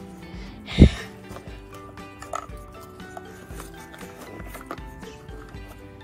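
Background music with steady held notes, with a single loud thump about a second in and light handling sounds as small toy items are pushed into a fabric doll backpack.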